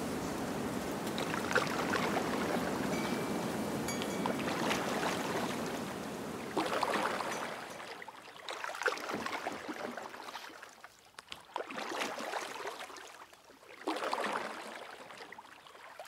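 Water washing and lapping: a steady wash for the first several seconds, then separate swells every two to three seconds that grow fainter toward the end.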